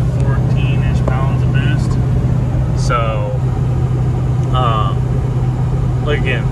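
Steady low drone of a Ford 6.0 Powerstroke V8 turbodiesel and its road noise heard from inside the cab, the engine under load climbing a hill at highway speed. A few short spoken fragments come through over it.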